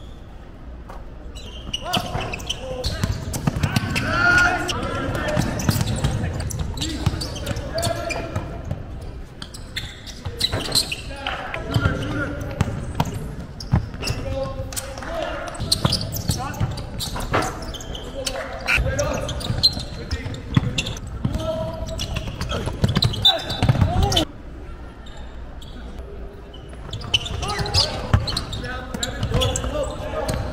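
Basketball game in a gym: a ball bouncing on the court in many short, sharp thuds, over a mix of players' and spectators' voices.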